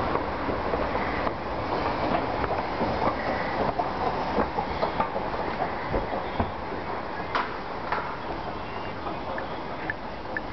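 Footsteps of someone walking, a run of light knocks about every half second that fades after about six seconds, over a steady rushing background noise.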